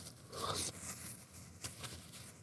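Faint rustling of a paper tissue and quiet breathing as a man wipes his running nose, brought on by chili heat, with a few small clicks.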